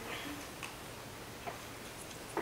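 Quiet room tone of a lecture hall with a few faint, scattered clicks, about 0.6 and 1.5 seconds in.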